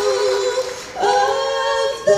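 Two women singing unaccompanied in harmony, two voices a short interval apart. They hold one long note, dip briefly, then hold a new pair of notes from about a second in.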